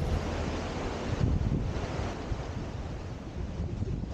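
Sea surf washing and foaming over rocks, with wind on the microphone.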